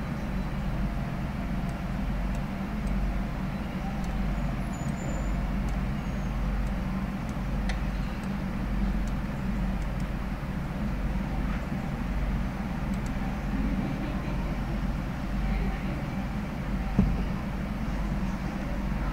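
Steady low hum with background noise from an open microphone, and one sharp click near the end.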